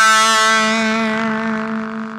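Electric guitar holding a final note at the end of a rock song, ringing on one steady pitch and slowly fading out.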